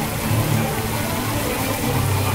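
Fountain jets gushing and churning a pond's surface: a steady rush of splashing water, with a low hum under it.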